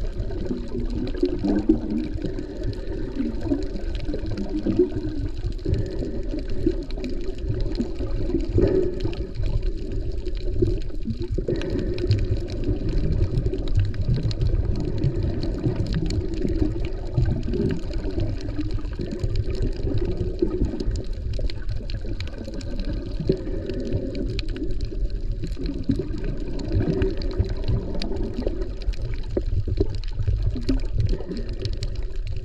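Muffled underwater water noise picked up by an action camera held below the surface while snorkeling: a steady low churning and swishing, with many faint clicks throughout.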